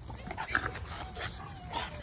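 Bully puppies at play, making a few short, faint grunts and whines among small scuffling sounds.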